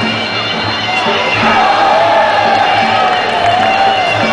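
Sarama, the live Muay Thai fight music: a reedy, wavering pi (Thai oboe) melody over a steady drum beat, with a crowd cheering that swells about a second in.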